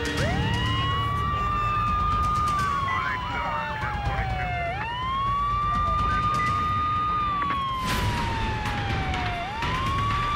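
An emergency-vehicle siren wailing in slow cycles. Each cycle climbs quickly to a high note, holds it for about two seconds, then slides slowly down before climbing again, about every four and a half seconds.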